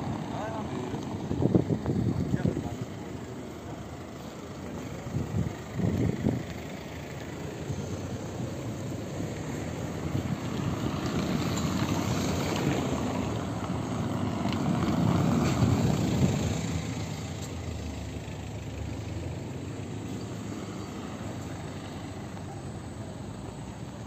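Street sounds on a cobbled square: short bursts of people's voices in the first few seconds, then a car passing over the cobblestones, louder for several seconds in the middle.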